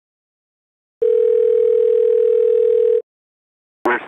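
Telephone line tone: one steady pitch held for about two seconds, starting about a second in, then a sharp click near the end as a recorded phone message begins.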